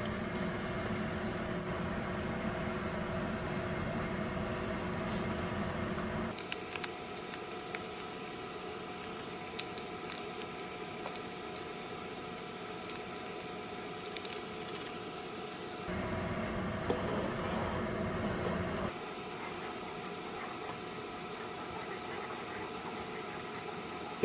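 Saucepan of water boiling on the stove under a steady background hum. The low rumble of the boil drops away about six seconds in and returns briefly later, with a few faint ticks as the gelatin powder is poured in.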